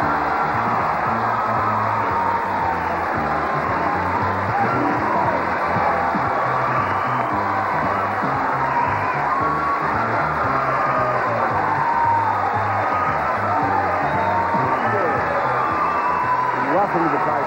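Game-show theme music playing over a studio audience cheering and applauding.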